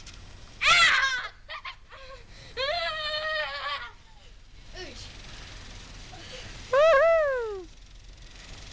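Young girls squealing and shrieking with laughter in a snowball fight: three high-pitched outbursts, a short one about half a second in, a longer wavering one a few seconds in, and a loud shriek near the end that falls in pitch.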